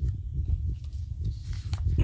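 Paper court documents being handled and shifted close to a phone microphone: a steady low rumble of handling noise with a few light knocks, and a short papery rustle near the end.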